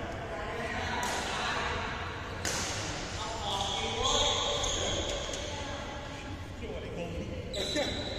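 Badminton rackets striking a shuttlecock, a few sharp hits about a second in, at two and a half seconds and near the end, echoing in a large sports hall over players' voices.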